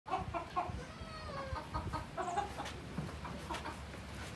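Barnyard animals calling: a run of short pitched calls, several a second, with one longer falling call about a second in, thinning out after the first two and a half seconds.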